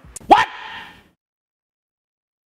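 A man's single short exclaimed "What?", sharply rising in pitch and fading out within about a second, followed by dead silence.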